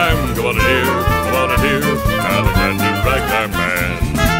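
Western swing band playing an instrumental passage: a fiddle carries the melody over a steady upright bass and rhythm-section beat.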